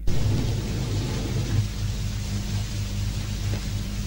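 Steady low rumble with a faint pulsing hum under an even hiss, with a faint click near the end.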